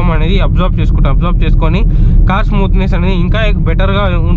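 A man talking over the steady low rumble of a Renault Scala diesel sedan being driven, heard from inside the cabin.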